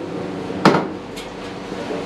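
Long steel ladle knocking against a large copper biryani pot (chembu) as the rice is turned. There is a sharp metallic clank about two-thirds of a second in, a light tap a little later, and another clank at the very end.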